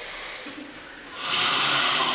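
A person hissing, long breathy hisses in imitation of a cat, done as part of a 'hissing cat' back stretch: one hiss trails off about half a second in, and another starts just past a second in.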